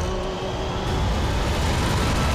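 Film trailer soundtrack: a loud, steady, dense rumble of battle sound effects with faint music underneath.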